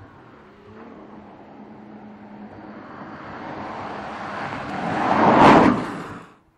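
A Porsche Panamera 4 E-Hybrid Sport Turismo approaching and passing close by. Its sound grows steadily, peaks about five and a half seconds in as it goes past, then cuts off suddenly.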